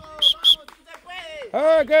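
Two short, high-pitched chirps in the first half second, the tail of a quick run of identical chirps, followed near the end by a man speaking.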